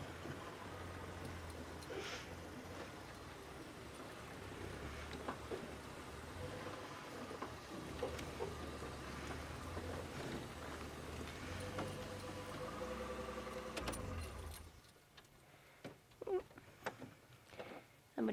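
Game-drive safari vehicle's engine running with a steady low rumble, then switched off about fifteen seconds in.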